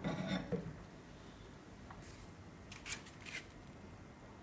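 A few brief, sharp clicks and rubs, clustered about three seconds in, from the autoclave bubble remover's door being handled as it is eased open after venting.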